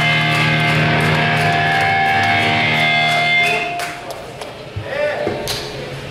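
Amplified electric guitar chord left ringing, held steady with no drums, which stops about four seconds in; after that, voices of people talking in the room.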